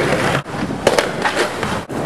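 Skateboard wheels rolling on pavement, with several sharp knocks of the board hitting and grinding on stone benches and ledges. The sound breaks off abruptly twice where the clips change.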